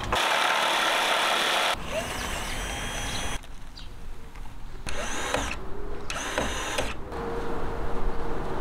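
A power drill/driver running steadily for under two seconds and cut off abruptly, followed by a string of short, different work sounds joined by hard cuts.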